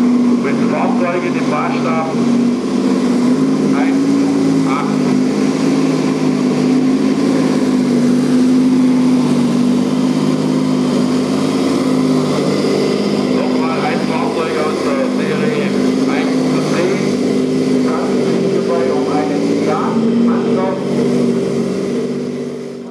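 1:8 scale radio-controlled Leopard 2A4 model tank driving over rough ground: a steady, low droning running sound that shifts slightly in pitch. People talk indistinctly in the background, more so about a second in, midway and near the end.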